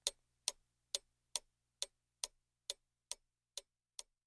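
Sharp, evenly spaced ticking, a little over two ticks a second, growing fainter toward the end.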